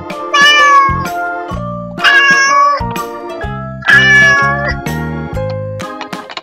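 A cat meowing three times, each meow under a second long, over upbeat boogie-woogie background music.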